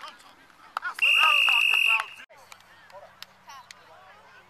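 A whistle blown once in a single steady, shrill blast lasting about a second, the loudest sound here, blowing the play dead after the tackle pile-up. Voices shout around it.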